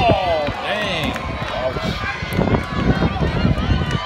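Unintelligible voices calling out and chattering, with high-pitched shouts near the start and a low rumble underneath.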